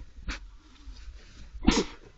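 European badger cub giving two short nasal snorts, the second one louder.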